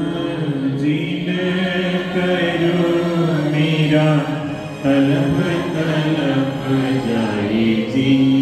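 Devotional chanting with music, sung in long held phrases, with a short break a little before halfway.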